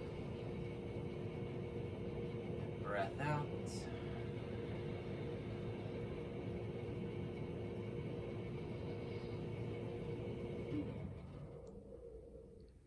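A steady hum holding two low tones over a rumble, cutting off about eleven seconds in. A brief voice-like sound comes about three seconds in.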